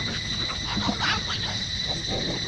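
Forest insects droning with a steady high-pitched whine, with scattered short rustles and crackles under it.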